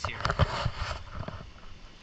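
Rustling noise with a few low knocks, strongest about half a second in and fading over the next second.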